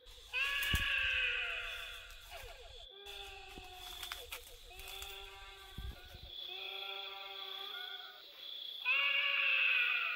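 Repeated drawn-out, wavering cries, several overlapping at different pitches, loudest just after the start and again near the end, over a steady high-pitched drone.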